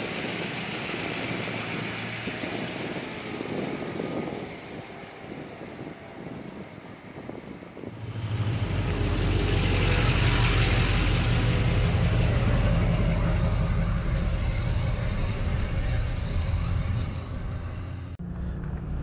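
GMC pickup truck towing an Airstream travel trailer, driving on pavement. About eight seconds in, a loud, deep, steady rumble of engine and tyres sets in as the rig rolls over a camera on the road, and it eases off just before the end.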